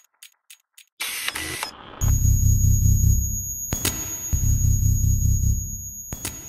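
Synthesized logo sting: a run of quick, faint clicks, about five a second, then a short hissing burst about a second in. From about two seconds a loud, deep, pulsing synth rumble plays with a thin, steady high whine over it, broken by a single sharp click midway.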